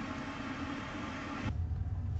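Electric toothbrush buzzing steadily while brushing teeth, stopping abruptly about one and a half seconds in. A low rumble with faint clicks follows.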